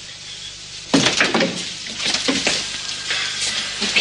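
Rattling and clattering of hospital equipment being moved around a bed, with rustling, starting about a second in.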